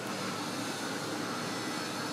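Steady, even background rush of workshop ambience, like ventilation, with no distinct knocks or clicks.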